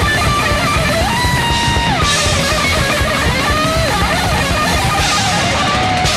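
Heavy metal music from a demo recording: distorted electric guitars with a melodic lead line of held, bending notes over dense, fast drumming.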